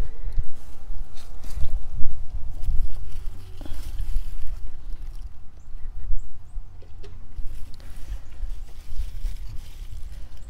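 Uneven low rumble on the phone's microphone, with rustling and brushing of tomato leaves and stems as a hand moves through the plants.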